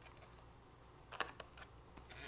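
Mostly quiet, with a steady low hum. About a second in, a quick run of three or four faint clicks from handling an electric guitar as it is turned over in the hands.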